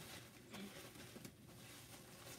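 Near silence with faint rustling of a plastic bag being handled.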